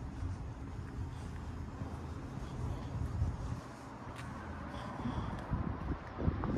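Wind on the phone's microphone outdoors: a low, uneven rumble with a faint hiss above it.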